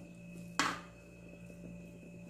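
A metal spoon knocks once against an aluminium cake pan about half a second in, a single short click, while coconut and pineapple filling is being smoothed. Otherwise quiet, with a faint steady hum.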